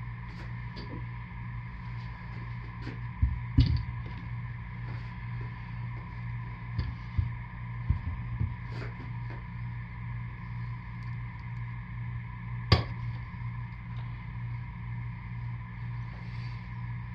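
Cold process soap being cut into bars on a wooden wire soap cutter: scattered knocks and taps as the loaf is pushed against the frame and the cutter arm comes down, with one sharp click near the end. A steady hum runs underneath.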